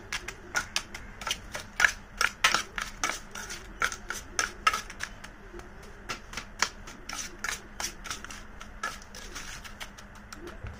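Steel spoon clinking and scraping against a stainless steel plate as it mashes and stirs a damp, crumbly paste, in a quick, irregular run of sharp clinks.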